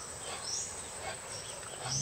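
Steady, high-pitched drone of crickets, with two brief high chirps, one about half a second in and one near the end.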